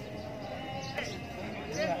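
Outdoor background of faint distant voices and a low steady hum with a few held tones, with a single short click about halfway and a close voice starting near the end.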